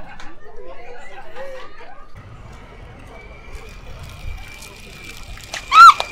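Background chatter of passers-by, then near the end one short, loud, high-pitched scream, a person's startled cry.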